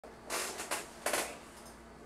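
Three short bursts of rustling noise in the first second or so, over a faint steady hum.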